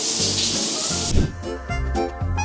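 Water running in a bathroom, a steady hiss of spray, with background music over it. The water sound cuts off abruptly about a second in, and the music carries on.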